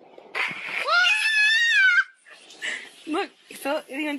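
A young child screaming, one high-pitched shriek that rises and is held for nearly two seconds. After a short pause come several shorter, lower cries or shouted sounds.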